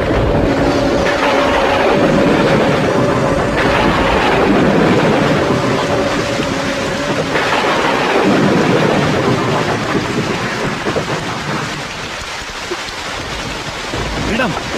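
Rain falling, with thunder rumbling in swells, on a film soundtrack. A single held note sounds through about the first half and stops about seven seconds in.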